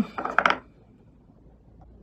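Quiet room tone with a faint low hum and one light tick, after a brief word at the very start.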